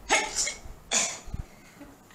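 A woman's imitated sneeze: a rising in-breath "ah", then a sharp, hissy "choo" about a second in.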